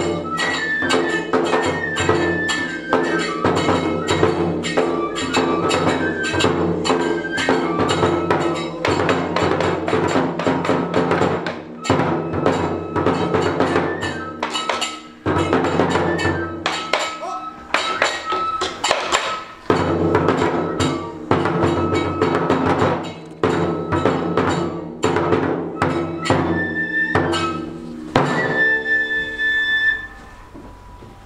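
Nanbu kagura music: a fast, steady run of taiko drum strokes with ringing small hand cymbals and a held, shifting flute melody, which stops right at the end.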